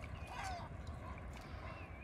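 Gulls calling, a few short cries about half a second in and again near the end, over a steady low rumble of wind on the microphone.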